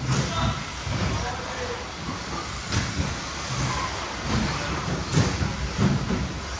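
2WD radio-control off-road buggies racing on a turf track: motors whining and tyres running, with a few sharp knocks from the cars striking jumps or the track edges.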